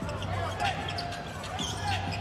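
A basketball being dribbled on a hardwood court, a few faint bounces under the arena's steady low hum.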